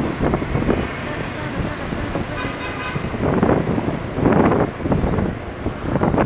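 Wind rushing over the microphone and road traffic noise from riding on a moving two-wheeler, with a vehicle horn giving a short, pulsing honk about two and a half seconds in.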